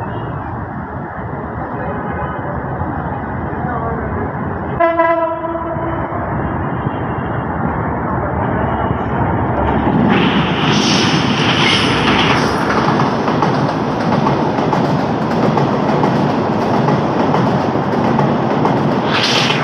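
Bangladesh Railway diesel-electric locomotive sounding one short horn blast about five seconds in as the train approaches. From about ten seconds the locomotive's engine and the wheels on the track grow louder as the locomotive and then its coaches pass close by.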